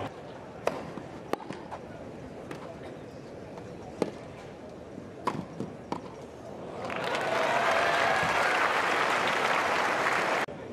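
Tennis ball struck by rackets during a rally, a handful of sharp pops, followed about seven seconds in by a crowd applauding and cheering the end of the point.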